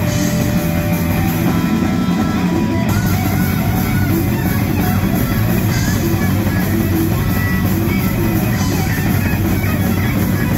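Live rock band playing an instrumental passage of a heavy metal song: distorted electric guitars and a pounding drum kit, with short lead guitar notes and bends above.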